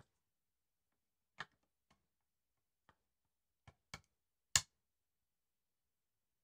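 A handful of short, sharp clicks and taps from small camera-rig hardware being handled, about six in all and spread out, the loudest about four and a half seconds in.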